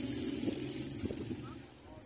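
Faint street background noise with no clear single source, fading over the two seconds.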